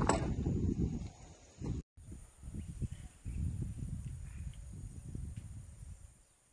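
Wind rumbling irregularly on a phone's microphone outdoors, with a few knocks near the start. It cuts off abruptly about two seconds in, and the gusty rumble returns in a different recording.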